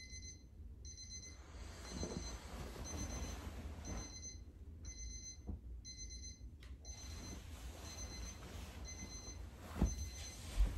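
Electronic alarm clock beeping in short high bursts, repeating about once a second, over a low steady hum.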